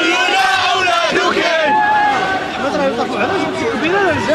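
Large crowd of demonstrators shouting slogans together, many voices at once, loud and unbroken.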